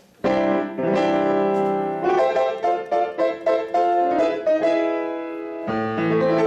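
A 1962 Kawai K-48 upright piano played with both hands, chords under a melody, ringing out strongly with a somewhat hard tone. A fuller bass chord comes in near the end.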